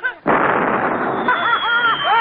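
A sudden loud explosion about a quarter second in, its noise trailing on. Men's voices are shouting over it from past halfway.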